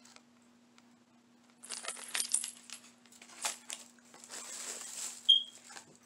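Packaged goods being handled: cardboard and plastic packaging rustling and clicking, starting about a second and a half in, with a sharp clink and a brief high ring near the end. A faint steady hum runs underneath.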